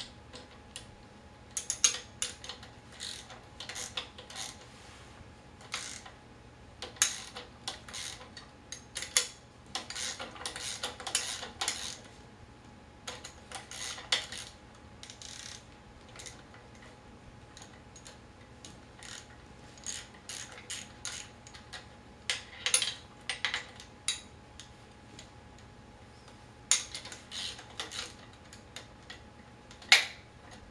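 Hand tool on the clamp bolts of a wheelchair wheel lock (brake) as it is adjusted and tightened on the metal frame tube: runs of sharp metallic clicks, in several bursts with pauses between.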